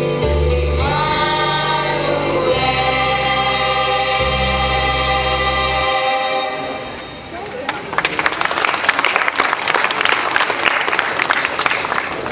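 A school choir sings sustained chords over low held accompaniment notes, ending about six seconds in. Audience applause follows and runs to the end.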